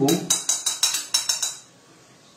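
Kitchen knife blade clinking against a plate: about a dozen quick, ringing clinks over a second and a half, then stopping.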